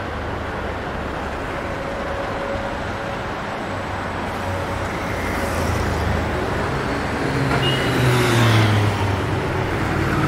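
Busy city road traffic with double-decker buses and cars running past. In the second half an engine passes close and grows louder, loudest about eight seconds in.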